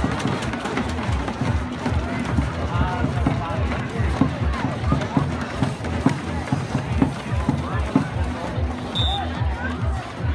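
Large crowd of spectators shouting and talking over a steady pounding beat, as of supporters' drums.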